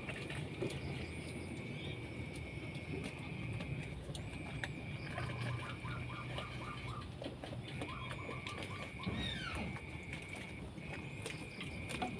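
An Etawa crossbred goat buck eating wet bran mash (comboran) from a rubber bucket, slurping and chewing with small scattered knocks. A steady high-pitched whine that stops and starts every few seconds, and bird chirps, sound behind it.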